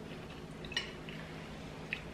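Quiet mouth sounds of someone taking a spoonful of mashed chickpea salad and chewing it, with two faint wet clicks about a second apart, over a low steady hum.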